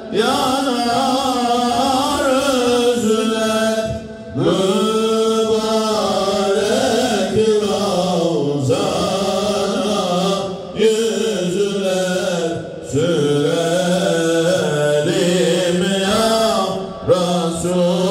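A single man's voice chanting an Islamic religious recitation in long, ornamented melodic phrases, broken by short pauses for breath every few seconds.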